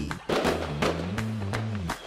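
Advert jingle music with a bass line and a steady beat, with crackling firework sound effects over it.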